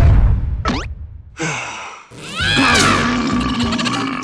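Animated cartoon characters' wordless vocal sounds and sound effects with music: a loud low yell at the start, a quick swooping pitch slide, a short pause, then swooping up-and-down vocal glides over a held note.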